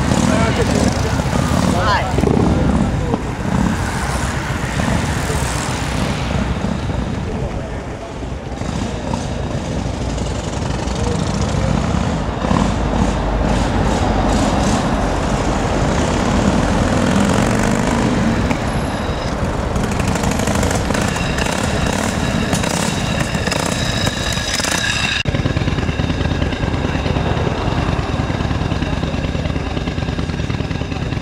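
Motorcycle engines and traffic mixed with people talking indistinctly; a motorcycle passes close by near the start. The sound changes abruptly about 25 seconds in.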